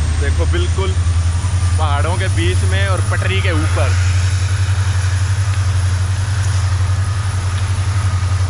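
A diesel locomotive engine idling: a loud, steady low rumble with a fast, even pulse.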